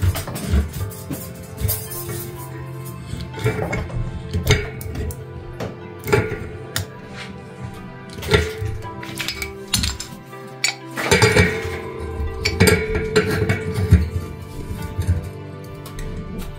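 Background music over repeated short metallic clinks as a brass pipe adapter is threaded on by hand. Near the end a pipe wrench is set onto the fitting.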